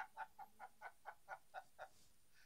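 Soft laughter: a steady run of short, even 'ha' pulses, about four a second, in reaction to a teasing question.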